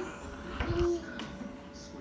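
A woman's brief, strained held 'ahh' from the throat with her mouth wide open, about half a second in, as she works a cotton bud against a tonsil stone, over a faint steady hum.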